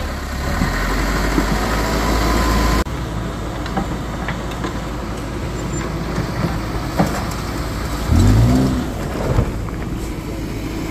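Backhoe loader's diesel engine running with a heavy low rumble, cut off abruptly about three seconds in. A hatchback car's engine then runs, and near the end it revs up briefly and loudly as the car pulls away over loose road fill.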